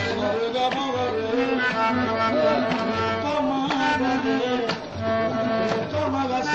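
Qawwali music: harmonium notes held and moving over tabla, with sharp drum strokes standing out, dipping briefly near the end.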